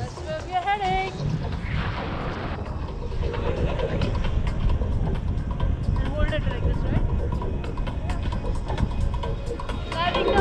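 Wind buffeting the action camera's microphone in a tandem paraglider's airflow, a steady low rumble. A few short pitched voice-like or melodic sounds come through it.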